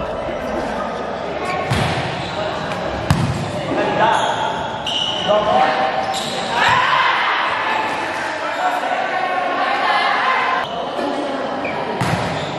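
A volleyball rally in a large gym: the ball is struck hard by hands and arms several times in serve, passes and a spike, sharp slaps that echo in the hall, the loudest about three seconds in. Players shout and call during the point.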